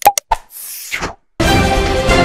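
Subscribe-button animation sound effects: a quick run of clicks and pops with a short whoosh between them, then the channel's outro theme music starting about one and a half seconds in.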